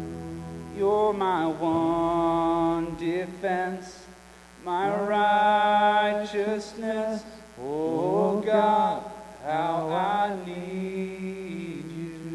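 A man singing slow, free-flowing worship phrases into a microphone, with long held notes and sliding pitches. A low sustained chord underneath fades out about three seconds in.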